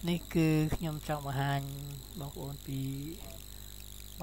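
Speech: a narrator's voice talking in phrases, over a faint steady hum.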